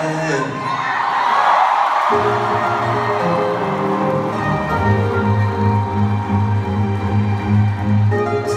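Live concert music heard from the audience over the arena sound system: crowd noise for the first two seconds, then sustained chords over a steady bass line come in suddenly.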